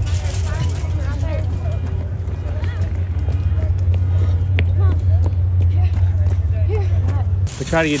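Distant, indistinct voices of people over a steady low rumble. A single sharp click comes about halfway through, and close speech begins right at the end.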